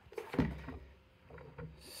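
Handling noise from a scanner base unit being gripped and turned round on a desk: a few soft knocks, the strongest a dull thump about half a second in.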